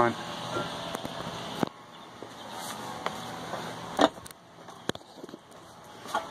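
Handling and movement noise as a handheld camera is carried: a steady background hum that drops away a little under two seconds in, a few light clicks and knocks, and a short vocal sound about four seconds in.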